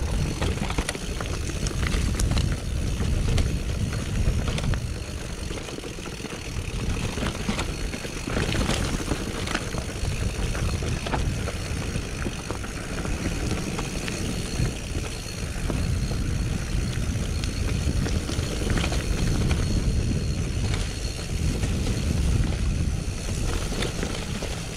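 Mountain bike riding downhill on a rough dirt trail: a low rumble of tyres on the ground that rises and falls, with scattered clicks and rattles from the bike over stones and roots.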